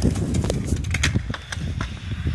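Skateboard wheels rolling over concrete: a steady low rumble with frequent irregular clicks and knocks.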